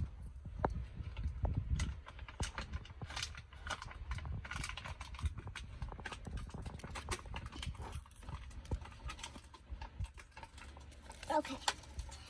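Paper collector's guide leaflet being handled: irregular small rustles, clicks and light knocks over a steady low rumble.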